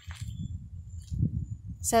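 Wind buffeting a phone microphone outdoors, an uneven low rumble, with the start of a spoken word at the very end.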